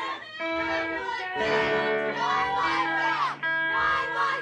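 Live rock band playing, with electric guitars holding sustained notes under a gliding voice. The sound drops back briefly twice, about a third of a second in and near the end.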